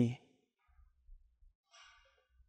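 A man's drawn-out word trailing off at the very start, then a pause of near silence, with a faint intake of breath near the end.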